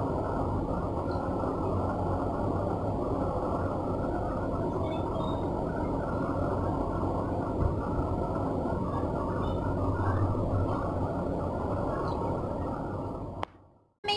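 Steady, muffled low rumbling noise, even in level with no rhythm, that cuts off abruptly near the end.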